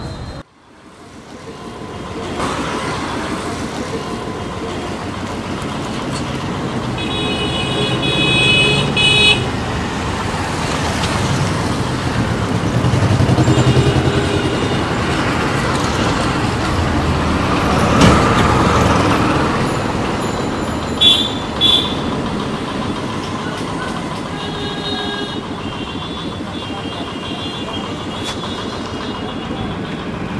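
Busy street traffic: engines and tyres rumbling steadily as vehicles pass, with vehicle horns tooting in a long burst about a quarter of the way in and again briefly twice near the two-thirds mark. A single sharp knock sounds about midway.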